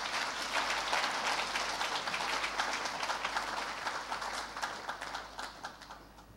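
Audience applauding, the clapping gradually thinning out and dying away near the end.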